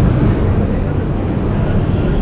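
Steady low rumble of outdoor background noise with no clear tone.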